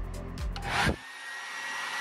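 Background music for about a second, then a handheld hair dryer switches on and runs with a steady rush of air and a thin high whine.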